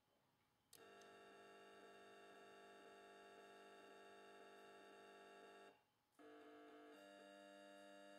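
Faint, sustained electronic tones, several held pitches sounding together like a chord. They start about a second in, stop briefly, then return twice on different pitches.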